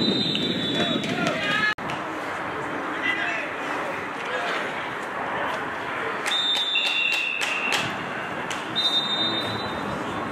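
Sharp, steady referee whistle blasts on a football field: one right at the start, two whistles at different pitches together a little after six seconds, and another near the end. Voices of players and people on the sideline run beneath them.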